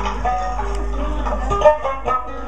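Mauritanian griot music played live on plucked strings, the ardine harp and the tidinit lute picking out a quick run of notes.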